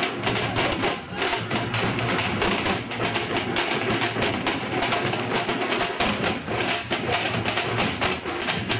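Procession drum band: large bass drums and side drums beaten with sticks in a fast, continuous rhythm.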